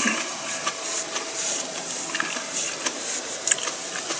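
A thin white wrapping handled close to the microphone while eating, giving irregular rustling and crinkling bursts. A faint steady hum sits underneath.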